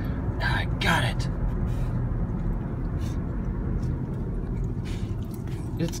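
Steady low road rumble inside a moving car's cabin, with a few short wet sounds of a corgi licking at a plastic cup.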